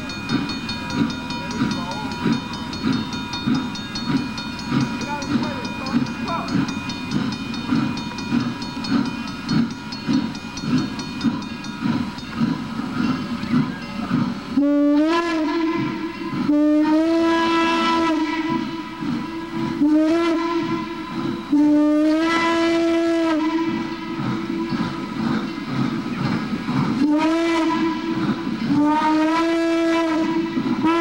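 Norfolk & Western 1218, a Class A 2-6-6-4 articulated steam locomotive, working toward the camera with a steady rhythmic exhaust beat. About halfway through it sounds its steam whistle in a series of long and short blasts, each sliding up in pitch as it opens, with a pause before the last two.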